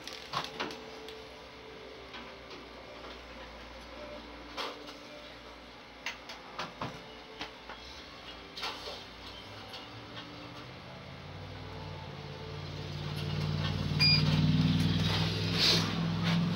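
A kitchen oven being put to use: light knocks and clicks, then a low hum that builds from about two-thirds of the way in, with one short electronic beep near the end.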